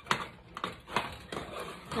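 A spoon scraping and knocking against the sides and bottom of a metal saucepan while stirring a thick peanut brittle mixture of boiling sugar syrup and peanuts, in irregular strokes a few times a second.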